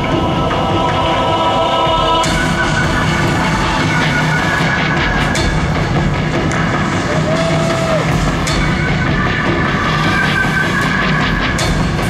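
Live rock band playing the instrumental opening of a song, loud and dense, heard from the audience.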